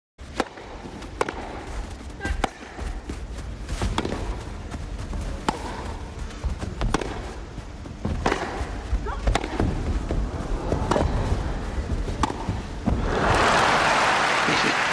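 Tennis rally: racket strokes on the ball, one sharp pock about every second and a half, over a low hum of crowd. Crowd applause breaks out about a second before the end as the point finishes.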